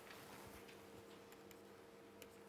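Near silence: faint taps and scratches of a stylus writing on a tablet, a few light clicks, over a faint steady hum.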